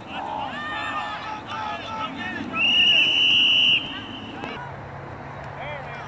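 A referee's whistle blown once, a shrill steady blast of just over a second about two and a half seconds in, over spectators and coaches calling and shouting.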